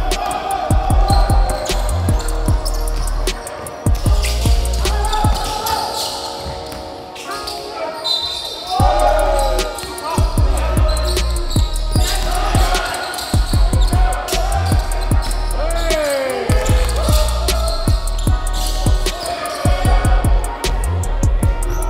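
A basketball dribbled and bouncing on a hardwood court, with repeated knocks all through. Sneakers squeal sharply on the floor a few times, near the middle and again later. Players shout now and then over music.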